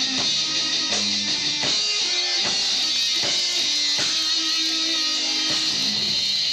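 A death metal band playing live through an instrumental passage. Distorted electric guitars hold and change notes over drums, with a constant wash of cymbals.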